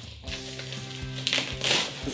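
Plastic bubble wrap being slit and pulled open around a boxed vinyl figure, with a crinkling rustle about one and a half seconds in, over steady background music.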